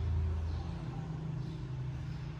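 A low, steady rumble, a little louder in the first half second.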